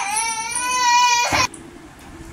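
A young child's high-pitched cry: one long wail that rises, holds, and cuts off with a short breathy burst about one and a half seconds in.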